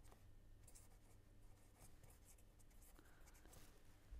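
Faint scratching of a pen writing words on paper, in short strokes over a low room hum.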